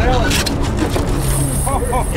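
Steady low rumble of a sportfishing boat's engine and the water it moves through, with indistinct voices on deck.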